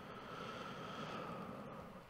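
Faint steady room noise with a faint high hum: the recording's background between words.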